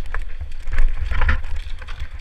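Mountain bike descending a rough, loose dirt trail at speed: wind buffeting the on-bike camera microphone in a constant low rumble, with tyres hissing over dirt and the bike rattling and clacking over ruts and roots in irregular short knocks.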